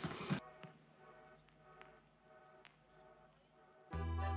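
Near silence with a few faint ticks, then background music comes in suddenly near the end.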